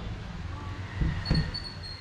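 A jacket being fastened and handled: a couple of brief rustling and knocking sounds about a second in, over a steady low background rumble.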